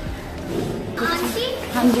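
Children's voices talking, starting about a second in, with low rumbling handling noise before them.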